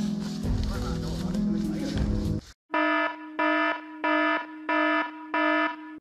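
Background music plays, then cuts off about two and a half seconds in. After a short gap comes a repeated electronic beep tone: about five identical, evenly spaced beeps, roughly one every two-thirds of a second.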